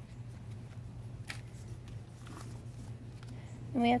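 Faint, sparse rustles of a paper envelope being handled, over a steady low hum. A woman's voice starts right at the end.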